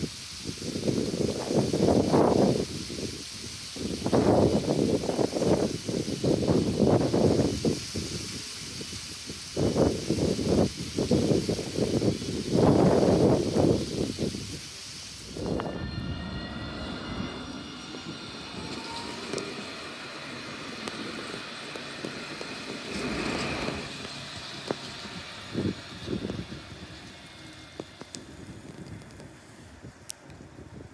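Gusty wind buffeting the microphone for about the first half. After a sudden change a little past halfway, an electric tram's motor whine comes in as thin high tones, some of them rising, under lighter wind.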